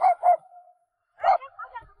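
Farm dogs barking at a visitor in short, separate barks: two quick ones at the start, then a few more about a second later.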